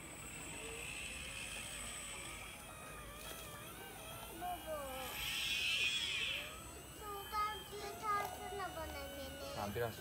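Faint steady whine of a radio-controlled model excavator's electric motors as the arm swings, heard clearly for the first two seconds or so. Voices talking then take over from about three seconds in.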